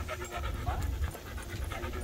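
A dog panting rapidly in quick, even breaths, about four or five a second, while walking on a leash.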